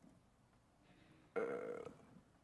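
Near silence, then a man's single drawn-out hesitation sound, 'uhh', lasting about half a second, about one and a half seconds in.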